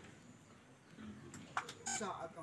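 Faint background murmur of a seated crowd, with a couple of sharp clicks near the end.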